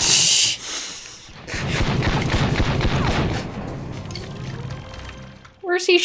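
Movie soundtrack of a gunfight: a loud burst of gunfire at the start, then a rapid run of shots for about two seconds, over music.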